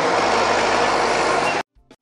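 The engine of site machinery runs steadily during a concrete pour, then cuts off suddenly near the end.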